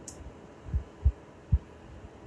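Three soft, low, dull thumps at uneven spacing over a faint steady hum, with a brief high tick right at the start.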